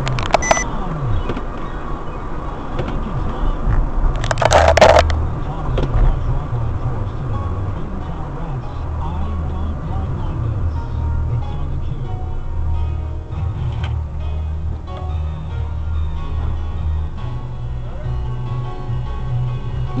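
Car engine and road noise heard from inside the cabin while driving, with music playing in the background. A brief loud noise about four and a half seconds in.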